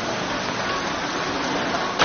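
Steady hiss of rain falling on a wet city street.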